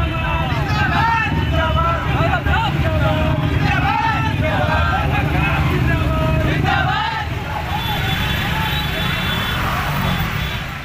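A crowd's overlapping voices, shouting and talking, over a steady low rumble of motorcycle engines.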